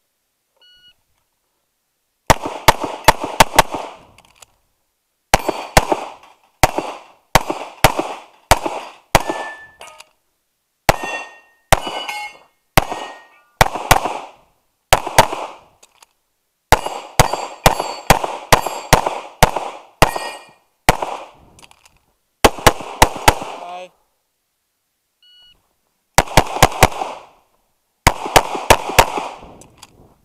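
Semi-automatic pistol fired in rapid strings of two to five shots, with short breaks between strings. After a few shots hit steel targets ring briefly.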